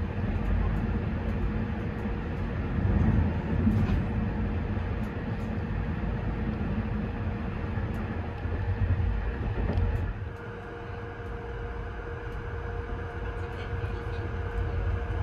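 EuroNight sleeper train rolling along the track, heard from inside the coach: a steady low rumble with a constant hum. It turns quieter about ten seconds in.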